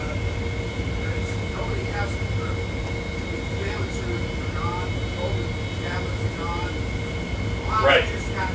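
A man in the audience asking a question off-microphone, faint and distant, over a steady low rumble and hum.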